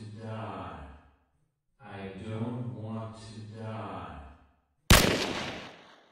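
A low, droning hum like a voice chanting or sighing, heard twice: it trails off about a second in and comes back for about three seconds. Near the end a single sharp gunshot rings out and fades over about a second.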